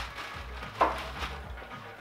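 Faint rustling of plastic packaging wrap being handled, with one short thump just under a second in.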